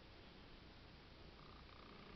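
Domestic tabby cat purring faintly, a low steady rumble.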